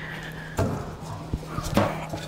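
A few sharp knocks and clacks, spread through two seconds, as a screen-printing screen frame is picked up and handled, over a steady low hum.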